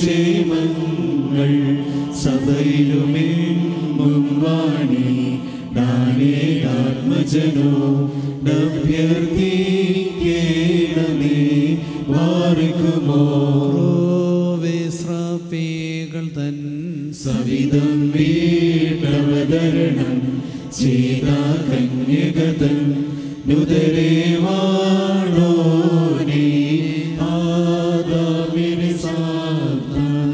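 A man's solo liturgical chant in the Syriac Orthodox tradition, sung into a microphone in long, flowing melodic phrases with brief breaks for breath.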